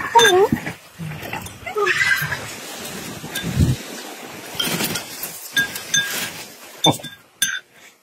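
Glassware, a spoon and bowls clinking on a table, with a few sharp clinks near the end. In the first two seconds there are short calls that waver in pitch.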